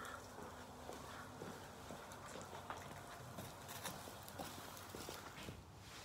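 Faint, irregular footsteps and knocks on a hard floor, with light rustling, as a load of straw is carried on a pitchfork.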